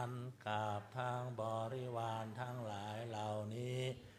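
Male-voiced chanting of a Buddhist offering formula to the Sangha, recited on a near-steady reciting tone in phrases with held syllables and brief pauses between them.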